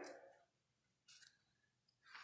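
Near silence: the last of a spoken "Amen" dies away in the room at the start, then one faint, brief rustle about a second in.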